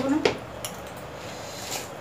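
A few light clinks of a spoon against a steel plate while eating.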